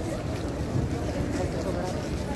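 Wind buffeting the phone's microphone in a low, steady rumble, with the voices of a crowd of people talking in the background.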